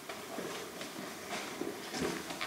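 Soft, irregular footsteps and movement noise of a person walking across a room, a few faint scuffs.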